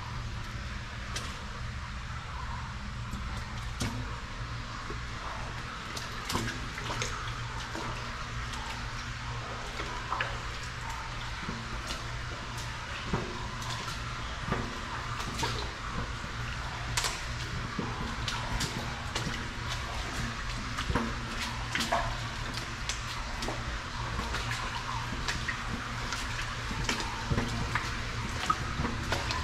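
Shallow creek water running through a concrete box culvert: a steady rush of flowing water, with a low steady rumble beneath it. Irregular short clicks and splashes sound throughout.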